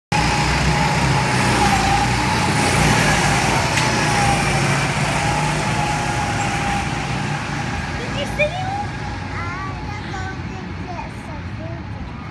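Small engines of go-karts running as the karts drive along the track, a steady drone with a wavering note, loudest in the first half and fading toward the end.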